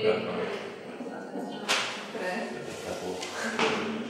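Indistinct speech in a room, with two short hissing bursts, one about a second and a half in and one near the end.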